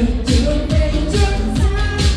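Live Vietnamese pop song: a singer's voice into a microphone over keyboards and a quick, steady dance beat with a heavy kick drum, about four beats a second.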